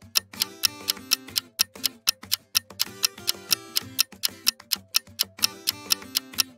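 Countdown-timer ticking, about four clock-like ticks a second, over a soft music bed with low notes.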